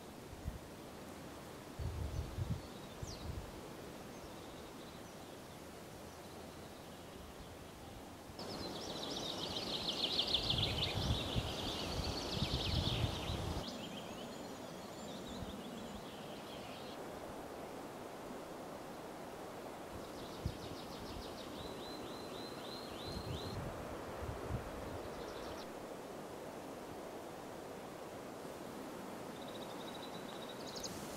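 Outdoor ambience: a steady wind hiss with low gusts buffeting the camcorder's built-in microphone, and small songbirds singing high, fast trills. There is a longer burst of song about a third of the way in and another about two-thirds in.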